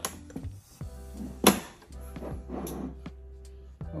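Sharp metal clicks and taps of hand tools and small screws being handled on a metal amplifier case, the loudest about one and a half seconds in, over a steady low hum and held tones.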